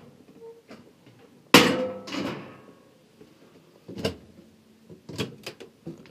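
Wooden cabinet doors and latches in a camper interior: a sharp knock about a second and a half in, then a few short clicks near the end as an overhead cupboard door is opened.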